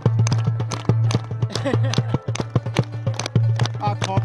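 Afghan folk dance music: a fast, even drum beat over a steady low drone, with a crowd clapping along in time.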